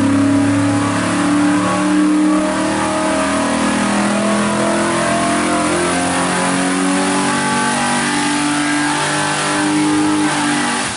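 572 cubic-inch big-block Chevrolet V8 on an engine dynamometer making a full-power pull, its engine note climbing steadily as it sweeps from about 4,000 to 6,000 rpm under load.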